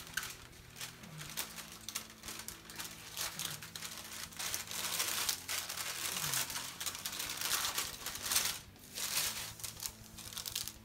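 Brown masking paper crinkling and rustling as it is handled, folded and pressed against a guitar body, with louder spells of rustling near the middle and again later on, over a faint steady low hum.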